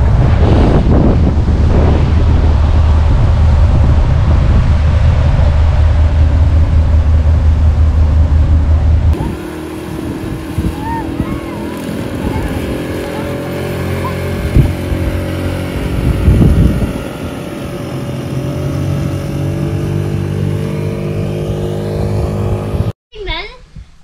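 A motorboat underway, with heavy wind rumble on the microphone for about the first nine seconds. Then, after a sudden change, a small outboard motor on an inflatable dinghy runs steadily across the water. The sound cuts off abruptly about a second before the end.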